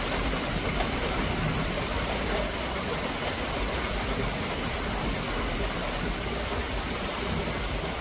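Heavy rain falling steadily on the surface of a lake, an even, unbroken hiss.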